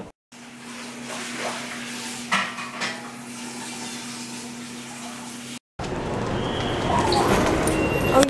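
A steady low hum over hiss, with a couple of light clicks from handling. After a brief break, the noisy hubbub of a busy airport baggage hall, with distant voices.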